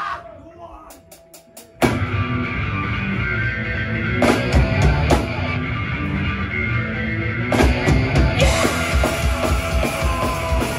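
Four sharp, evenly spaced clicks of a drumstick count-in, then a live punk rock band comes in loudly just under two seconds in: electric guitar, bass guitar and drum kit playing a steady driving beat.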